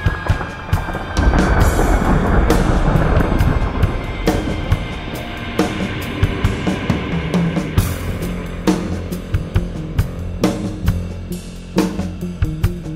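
Instrumental rock music led by a drum kit, with bass and electric guitar. A held guitar note at the start gives way to a louder, denser passage from about a second in, then steady kick and snare hits carry on.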